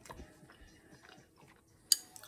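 A person chewing a spoonful of a soft, creamy ground-beef and cheese dish: quiet wet mouth and lip sounds with small clicks, and one sharp click near the end.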